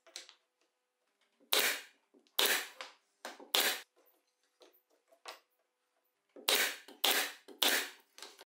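A pneumatic nail gun fires about eight sharp shots in irregular clusters as it drives nails through plywood blocks into a plywood rail. Fainter knocks of wood being handled come between the shots.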